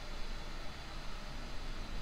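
Steady faint hiss with a low hum underneath: microphone room tone between spoken lines.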